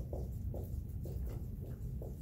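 Dry-erase marker writing on a whiteboard: a quick series of short scratchy strokes over a low, steady room hum.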